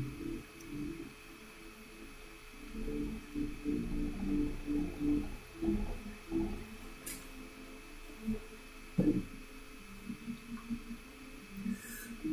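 A faint, muffled voice with only its low pitch coming through, in stretches a few seconds long, as of a student answering over a poor online-call line.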